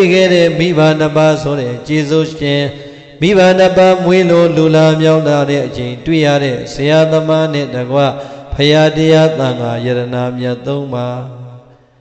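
A single male voice, a Buddhist monk, chanting Pali verses in long, held melodic phrases, with short breaks every two to three seconds. The chanting fades away near the end.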